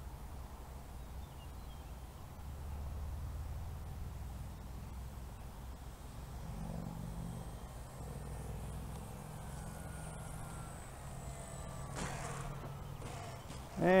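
Faint, thin, high whine of an electric RC model plane's motor and propeller on landing approach, slowly rising in pitch and then cutting off near the end, over a low rumble of wind on the microphone.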